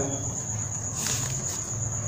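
A steady high-pitched insect trill with faint room noise beneath it.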